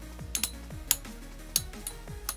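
Two Metal Fight Beyblades, Dark Gasher CH120FS and Dark Cancer CH120SF, spinning in a plastic stadium. Their metal wheels knock together in about five sharp clicks at uneven intervals, over electronic background music.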